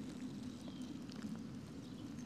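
Faint low rumble with a few soft ticks: handling noise from a camera held freehand as the lens is moved along the ground.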